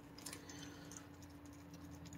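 Very quiet: a raccoon nosing at a metal food tray, a few faint light ticks over a steady low hum.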